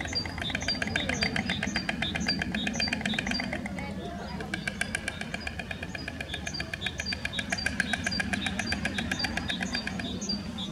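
White stork bill-clattering: a rapid wooden rattle of the bill snapping open and shut, in two long bouts with a brief break about four seconds in. This is the storks' greeting and display at the nest.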